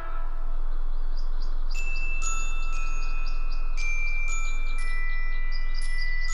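Gentle background music of sparse, bell-like chime notes, struck one after another and left ringing, over a steady low hum.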